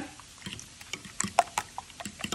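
Light, irregular clicks and taps of kitchen utensils against cookware.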